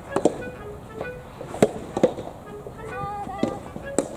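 Soft tennis rally: a rubber soft-tennis ball popping off racket strings and bouncing on the hard court, several sharp hits spread through a few seconds.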